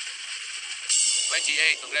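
Game-show music bed under the mega-ball draw; about a second in comes a sudden loud, hissing whoosh, followed by a bright chiming jingle as the mega ball is revealed. A male host calls out the number right at the end.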